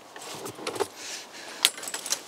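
Several short clicks and rattles as a folding table and a bag are handled and lifted out of a car's open boot.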